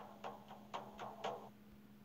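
Faint quick ticks, about four a second, over a low steady hum.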